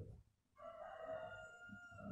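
A faint, drawn-out call made of several steady tones held together, starting about half a second in and lasting about a second and a half.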